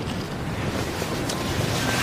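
Steady rush of outdoor wind, with wind buffeting the microphone.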